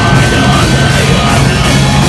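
A metalcore band playing live at full volume, heard close to the stage: heavily distorted electric guitars, bass and pounding drums.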